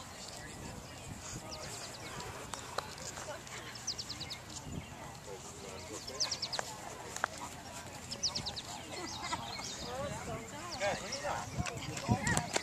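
Open-air ambience with people's voices in the background. A short, rapid, high chirping phrase repeats every two to three seconds. The voices grow closer and louder near the end.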